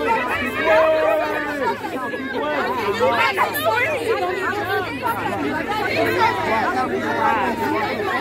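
Crowd chatter: several voices talking over one another at once, none clear enough to make out.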